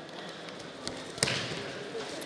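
Wrestlers grappling on the mat: a small knock, then one sharp thud of a body hitting the mat a little over a second in, with voices in the hall.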